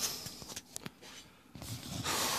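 Faint handling noise: a few scattered light clicks and soft rustling.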